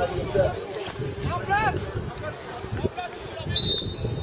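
A referee's whistle blown once, a short steady blast near the end, over people talking.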